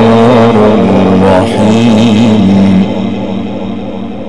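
A man's voice reciting the Quran in the drawn-out melodic style, holding a long wavering note that ends about three seconds in. A low steady hum remains after the note ends.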